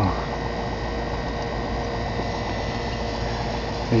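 Steady fizzing hiss with a low hum as a nine-plate stainless-steel HHO electrolysis cell runs, bubbling gas up through the water in its jar.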